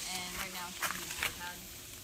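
A few light clicks and knocks from a hand working an outdoor hose faucet to turn the water on, with faint voices in the background.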